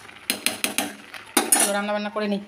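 A steel slotted spoon clinking and scraping against an aluminium rice pot as freshly cooked rice is stirred. There are several quick clinks in the first second, then a louder knock about a second and a half in.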